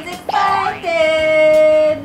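A voice singing: two quick upward swoops, then one note held steady for about a second.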